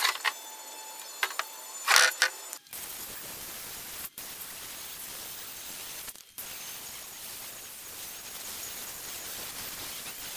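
A handheld power sander runs steadily against cured fiberglass and epoxy, a constant grinding hiss that starts about three seconds in and breaks off briefly twice where clips are cut together. Before it come a few light knocks as the shell is handled.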